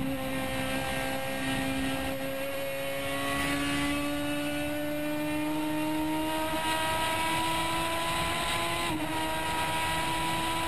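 Toyota Corolla Super TC 2000 race car's engine heard onboard, accelerating hard along a straight after a corner. Its note climbs slowly and steadily, with a brief dip about nine seconds in.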